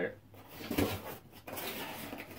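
A cardboard shipping box being handled and set down, with a few short scuffs and rustles of cardboard.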